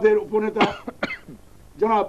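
A man speaking Bengali in short phrases, broken about a third of the way in by a brief cough before he talks on.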